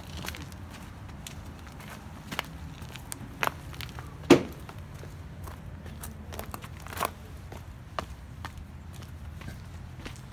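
Footsteps on dirt and fallen leaves, with several sharp knocks, the loudest about four seconds in, over a steady low hum.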